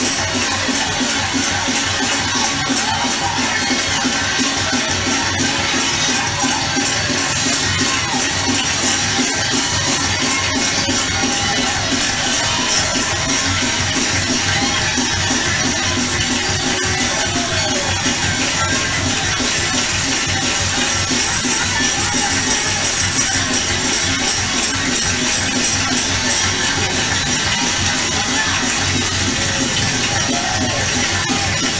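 Live gospel music from a mass choir and band playing a steady up-tempo beat with shaker-type percussion, with a crowd in the hall.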